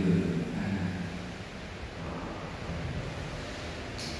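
Chanted singing trailing off in the first second, followed by a steady hiss of church room noise.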